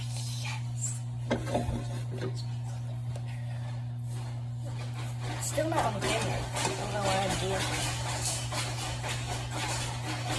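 A girl's voice singing without clear words through the second half, over a steady low hum. A couple of light clicks come about a second and a half in.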